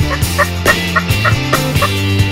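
A turkey gobbling, a quick run of short notes across the whole two seconds, heard over rock background music.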